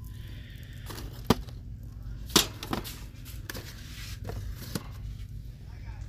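Boxed merchandise and shelving being handled: several sharp clicks and knocks, the loudest about two and a half seconds in. A steady low hum runs underneath.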